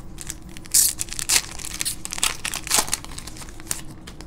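Foil wrapper of a Panini Prizm basketball card pack crinkling in irregular crackles as it is handled and opened, the loudest crackle about three-quarters of a second in.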